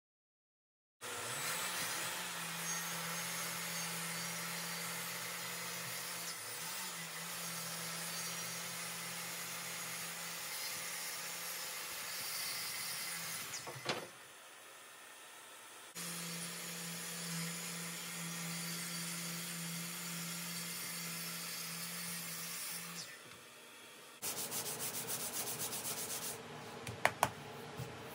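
Random orbital sander running steadily on an ash tabletop, starting about a second in and stopping after roughly twelve seconds. After a short, quieter pause a similar steady sanding run follows. Near the end come quick back-and-forth rubbing strokes of a hand sanding block on the wood.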